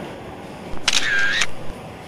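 A camera shutter sound, about half a second long, about a second in, over steady background noise.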